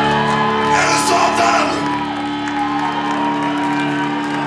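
Live metal band playing through a hall PA: held, sustained chords with a shouted vocal about a second in.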